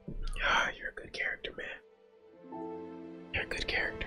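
A soft whispered voice, then quiet string music that enters about two and a half seconds in with long held notes.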